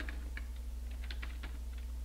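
Computer keyboard keys tapped: a scatter of light, separate keystrokes while typing at a command-line prompt, over a low steady hum.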